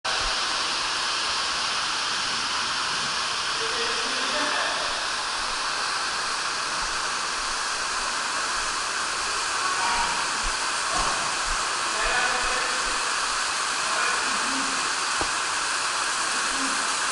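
Indoor water park hall ambience: a steady rush of running water, with faint distant voices now and then.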